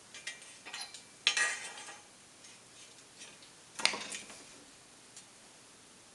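Steel pieces and angle iron clinking and clattering against the bed of a fly press as the work is set up: a few light clinks, a louder metallic clatter about a second in, and another sharp knock about four seconds in.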